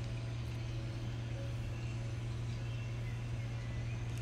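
A steady low hum with a few faint higher tones, unchanging throughout.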